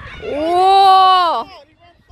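A spectator's loud, drawn-out cheering shout, held for just over a second, rising in pitch at the start and dropping off at the end.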